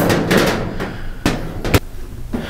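Handling noises as a charger plug is fitted to an electric dirt bike's removable battery: rustling through the first second, then two sharp clicks, the second louder, near the end.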